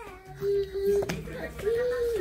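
A baby fussing with two drawn-out whiny cries, one about half a second in and one near the end, with a short sharp knock about a second in.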